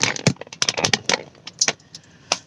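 Irregular rapid clicking and rattling of something handled close to the microphone, most dense in the first second and thinning out near the end.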